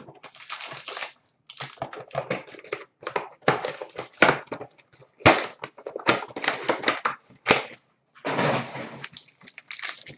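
Cardboard card boxes and plastic pack wrapping being torn open and handled: a run of irregular rustles, crinkles and rips, with a longer stretch of crinkling near the end.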